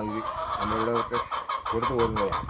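Chicken clucking in a rapid run of short, repeated notes.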